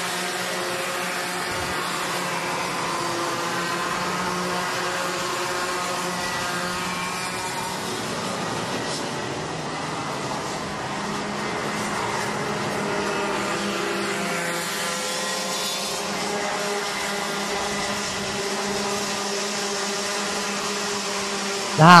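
A pack of Mini Max racing karts with two-stroke engines running on track. Their overlapping engine notes rise and fall in pitch as they accelerate out of corners and lift for the next, at a steady overall level.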